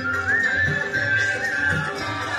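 Indian folk-style devotional music: a high, bending melody over a steady drum beat.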